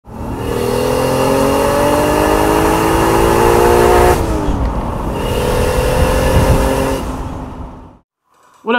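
Car engine accelerating, its pitch climbing steadily, with a sudden drop in revs about four seconds in, like an upshift. It then pulls and climbs again before fading out.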